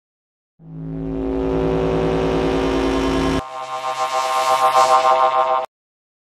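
Synthesized intro sting for a news video: a sustained drone swells in and holds, then switches abruptly to a higher, fast-pulsing wavering tone that stops dead shortly before the end.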